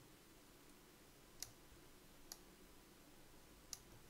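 Three faint computer mouse clicks, spread over a few seconds with the last near the end, over near-silent room tone.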